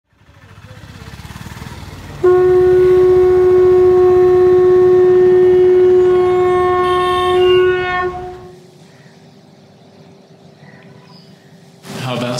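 An intro sound: a swelling rumble, then a loud single horn-like note that starts suddenly and is held steady for about six seconds before fading out.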